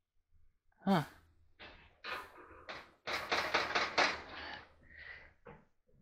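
Light knocks, clicks and rattling from handling a clothes dryer's top panel and timer housing, scattered at first and densest in the middle for about a second and a half.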